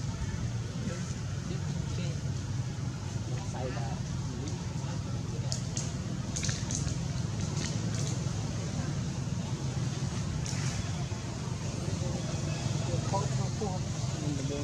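Indistinct voices of people talking in the background over a steady low hum, with a few short sharp clicks partway through.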